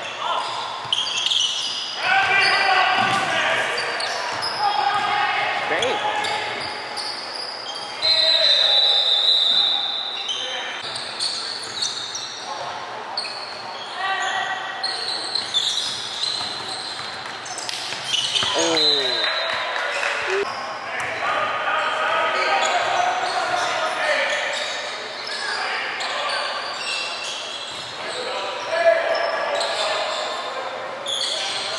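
Live basketball game sound in an echoing gym: a ball dribbling on the hardwood court, sneakers squeaking, and players and spectators calling out indistinctly.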